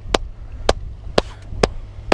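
Four slow, single hand claps about half a second apart, applauding a big fish, over a low rumble.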